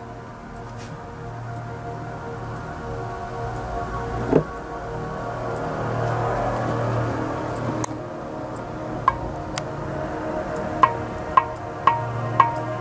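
Background music: a sustained, ominous ambient pad that swells slightly, with a light ticking beat of about two ticks a second coming in near the end.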